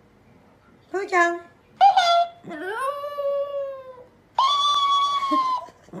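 Chihuahua howling in a string of drawn-out, high-pitched calls: two short ones, then a long call that rises and slowly falls, then a held steady note.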